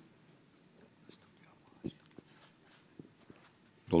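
A pause in a man's speech at a desk microphone: quiet room tone with a few faint, short mouth clicks, then his voice resumes right at the end.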